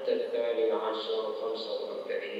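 A man speaking into a microphone at a lectern.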